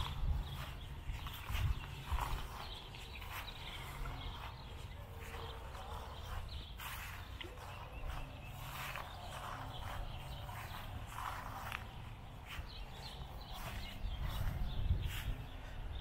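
Footsteps walking along a lakeshore, a series of irregular soft crunches, over a low rumble of wind and handling noise on a small handheld camera's microphone.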